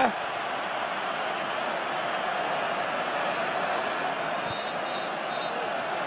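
Football stadium crowd's steady din, many voices blended into one even noise, with a few faint short high whistles about four and a half seconds in.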